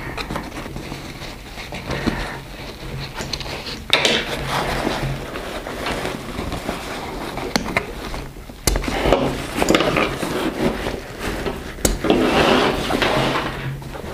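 Nylon backpack being handled as its compression straps are undone: fabric and webbing rustling and sliding, with a few sharp clicks.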